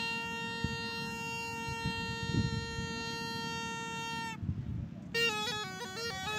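Snake charmer's pungi (been), a reedy gourd wind instrument, holding one long buzzy note. It breaks off a little after four seconds in, then starts up again near the end with a melody that steps up and down between notes.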